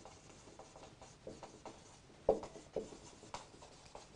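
Felt-tip marker writing on a whiteboard: faint, irregular scratching and squeaking strokes as letters are formed, with a few louder strokes past the middle.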